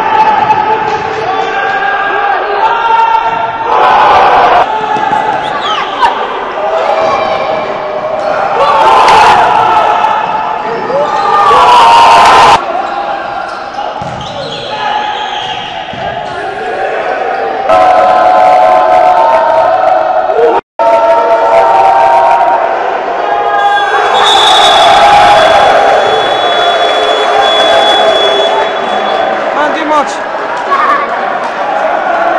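Basketball being dribbled and bounced on an indoor court in a large, echoing gym, with players and onlookers shouting. The sound breaks off abruptly a few times, with a brief dropout about two-thirds through.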